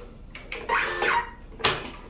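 Plastic clicks and a squeaking, scraping slide as the ribbon carriage of a Honeywell PC42t label printer is unlatched and lifted open. A sharp plastic snap near the end is the loudest sound.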